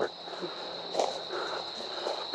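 Steady chorus of singing insects, one thin high shrill tone that holds without a break, with a few soft footsteps on grass about a second in.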